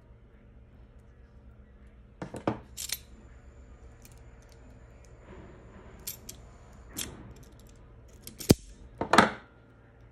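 Self-adjusting wire stripper gripping and stripping insulation from a cable conductor: a series of sharp clicks and snaps as the jaws close and spring open, about six in all, the sharpest near the end.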